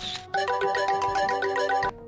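Mobile phone ringtone for an incoming call: a loud, fast-repeating electronic melody that starts about a third of a second in and cuts off suddenly near the end.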